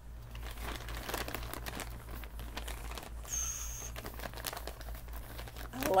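Plastic packaging crinkling and rustling irregularly as hands rummage through it to pull out a skein of yarn, with a brief high-pitched tone a little past the middle.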